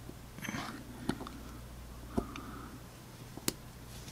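Three small sharp clicks, roughly a second apart, as steel spring bars are pressed by hand into the lugs of a Morphic M63 watch case and snap into place; the last, near the end, is the sharpest.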